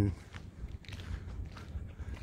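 Faint footsteps on an outdoor path, with a low rumble of wind and handling noise on the microphone.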